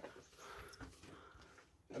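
Near silence: only faint, low background noise.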